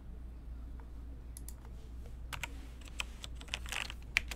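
Computer keyboard being typed on, irregular key clicks starting about a second and a half in, over a low steady hum.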